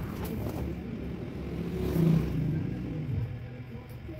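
A motor vehicle engine passing by, a low rumble that swells to its loudest about halfway through and then drops in pitch and fades.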